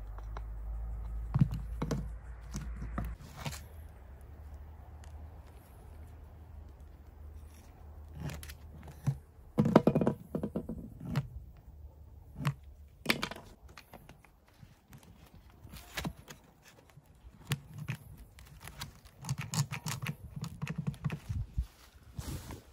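Irregular knocks and clatter of a wooden hammer handle and hand tools being handled on an old wooden workbench. The loudest knocks come about ten seconds in, and a quicker run of clicks comes near the end.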